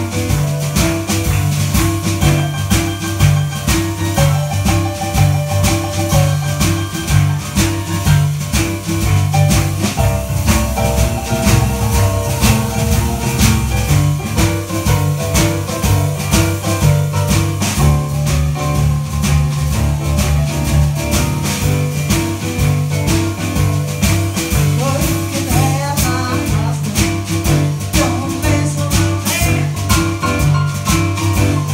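Live boogie-woogie played on two Kawai digital stage pianos with a drum kit: a steady, repeating rolling bass figure in the left hand under right-hand piano runs, with drums keeping time.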